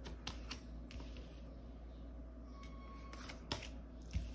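Tarot cards being laid down on a tabletop: a few faint clicks and taps in quick succession near the start, then another about three and a half seconds in.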